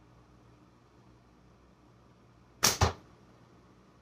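A slingshot shot with tapered 0.8 flat bands and an 11 mm steel ball: two sharp cracks a fraction of a second apart, near the end. The shot misses the spinner target.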